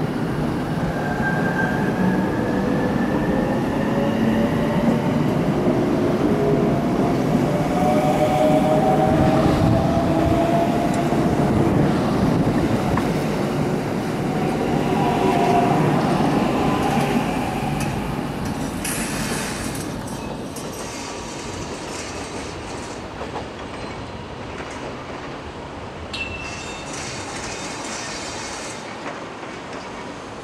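Electric commuter train pulling out of a station, its motor whine rising in pitch as it speeds up, then fading away over the second half.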